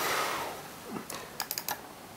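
A brief soft hiss at the start, then a quick run of sharp clicks from a computer mouse about a second in, advancing a presentation slide.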